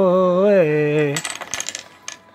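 A man's voice holding a sung, chant-like note for about a second, then a quick run of clicks as small wooden game pieces clack together in his hand and onto the table.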